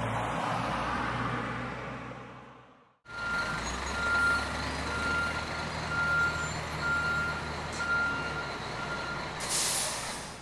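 A car passes on the road and fades away over the first three seconds. Then, after an abrupt cut, a truck or site-machine engine runs steadily while its reversing alarm beeps at a bit over one beep a second. A short hiss like an air-brake release comes near the end.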